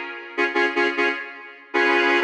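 Tape-sampled cello preset "Beautiful Cello M1" on IK Multimedia's SampleTron 2 software instrument, a Mellotron-style tape-replay sound, played from a keyboard. It plays a quick run of short notes about half a second in, then a chord held from near the end.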